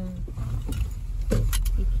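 Low, steady rumble of a Toyota Crown Majesta (UZS186) rolling slowly at low speed, heard from inside the cabin. A few light clicks come about a second and a half in.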